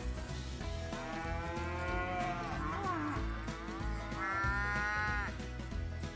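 Weaned calves mooing: two long calls, the first about a second in and falling in pitch at its end, the second shorter, starting about four seconds in.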